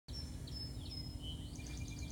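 Birds chirping and whistling in the background: thin high notes, a falling whistle, and a quick run of repeated chirps near the end, over a steady low outdoor hum.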